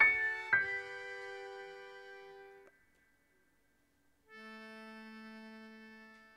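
Accordion and electric keyboard playing an instrumental passage: two chords struck about half a second apart ring and fade away, then after a short silence a long steady chord is held.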